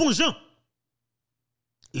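A man's voice speaking, cut by a gap of dead silence about a second long in the middle, with the next word starting near the end.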